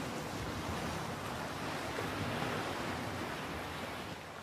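Steady background hiss with no distinct sounds in it.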